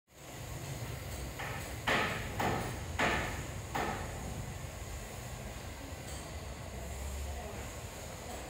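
Five sharp knocks, each with a short ringing tail, come in quick succession between about one and four seconds in. They sound like hammer blows on a construction site, over a steady low rumble.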